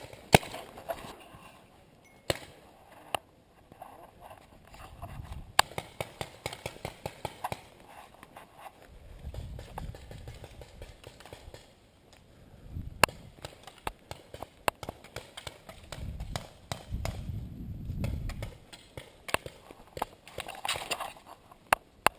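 Footsteps of a paintball player moving and running over grass, broken by scattered single sharp cracks, likely paintball markers firing, and low rumbling swells now and then.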